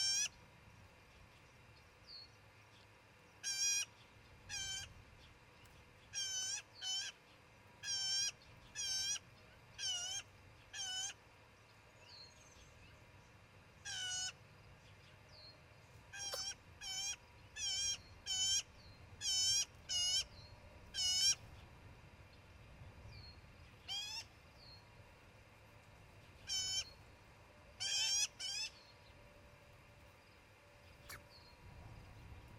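Osprey calling: about two dozen short, high, whistled chirps, each well under a second, given one or two at a time with pauses between runs.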